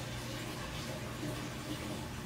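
Steady running-water sound from a bowl aquarium, with a low steady hum underneath.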